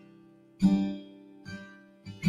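Acoustic guitar chords strummed and left to ring out: a firm strum about half a second in, then a lighter one about a second later.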